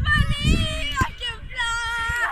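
A child's high voice holding two long, wavering sung notes, the second beginning about a second and a half in, over a low rumble.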